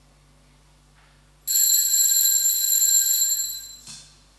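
Altar bells rung at the elevation of the consecrated host: a loud, high, steady ring that starts about one and a half seconds in, lasts about two and a half seconds, and cuts off near the end.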